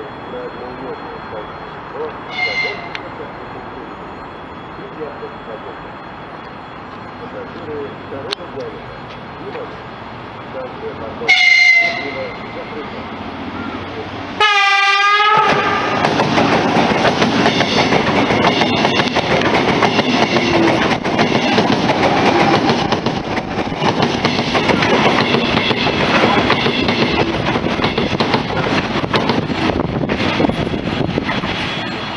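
Lastochka ES2G electric train sounding its horn: a short faint toot about two seconds in, a loud blast about eleven seconds in, and another whose pitch falls as it arrives. It then runs past close by through the platform without stopping, a loud steady rush of wheels and train body.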